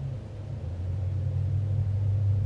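A low, steady rumble that swells about half a second in and then holds.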